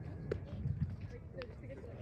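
Voices on a softball field over a low rumble, with two sharp clicks about a second apart, in keeping with softballs being caught and thrown in a fielding drill.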